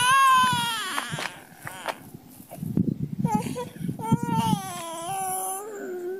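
Toddler crying after falling face-first: a long wail that falls in pitch over the first second, then a second drawn-out, wavering wail from about three seconds in.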